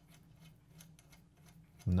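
Faint small clicks and scrapes of a metal bolt being turned by hand through a spring into an aluminium extruder arm.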